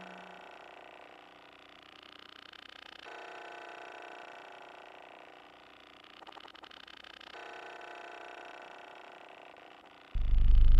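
A quiet passage of computer music: faint sustained electronic tones sounding together. The set of tones shifts about three seconds in and again about seven seconds in, with a brief rapid flutter just after six seconds.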